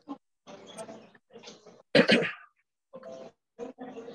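A pet animal making short, breathy vocal sounds right at the microphone, a string of brief bursts with one much louder one about two seconds in.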